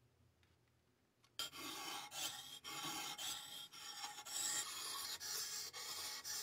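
Steel knife blade scraped back and forth on a wet Mojino 400/1000 combination whetstone, rasping strokes about twice a second that begin about a second and a half in.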